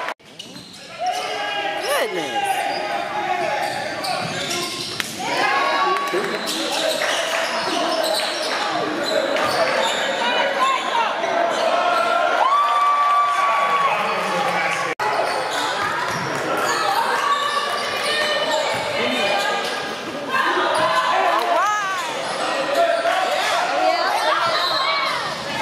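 Live basketball game sound in a gym: the ball bouncing on the hardwood, sneakers squeaking, and players and spectators calling out and talking. There is a short dropout at the very start and a sudden break about fifteen seconds in.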